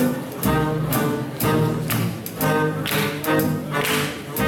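Live small swing jazz band with horns, piano, guitar, double bass and drums playing an up-tempo swing tune, with a steady beat of about two pulses a second.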